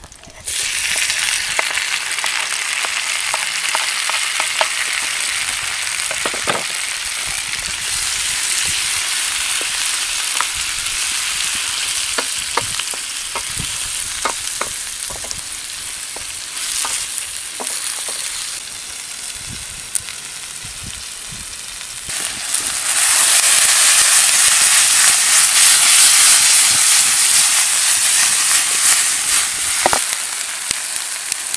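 Tire şiş köfte and chopped tomatoes sizzling loudly in a steel pan over a wood fire. The sizzle starts abruptly about half a second in as the tomatoes go into the hot pan, with a wooden spatula clicking against the pan as they are stirred. About two-thirds of the way through, the sizzle jumps up sharply and turns harsher.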